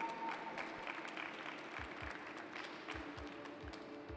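Scattered hand clapping from a small audience over background music, with a low beat coming in about halfway through.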